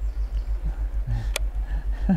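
Low, even throb pulsing about six or seven times a second from a 55 lb-thrust electric trolling motor driving the boat at a steady pace, with one sharp click about a second and a half in.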